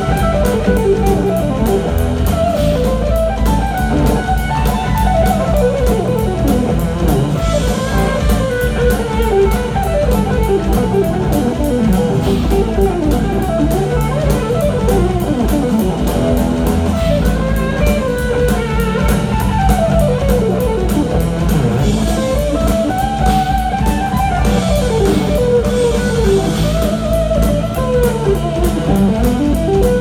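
Live instrumental rock played by a trio: an electric guitar lead plays fast runs of notes that sweep up and down, over bass guitar and a steady drum beat.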